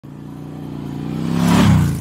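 A motor vehicle's engine passes by. Its hum swells to a peak about one and a half seconds in, drops in pitch and begins to fade.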